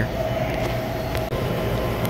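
Steady low hum of a commercial refrigeration condensing unit running, its condenser fan and working compressor, with a faint thin whine over it.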